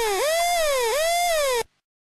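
Dub siren synth effect: one electronic tone with a bright, buzzy edge that jumps up in pitch and slides slowly back down, repeating about every three-quarters of a second, then cuts off abruptly about a second and a half in.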